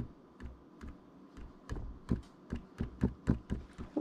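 Footsteps on a hardwood floor: a string of soft, irregular thumps, a few a second.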